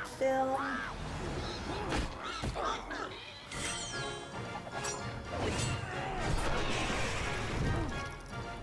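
Soundtrack of an animated cartoon: background music with a character's shrill cries and crash sound effects, and a falling whistle about halfway through.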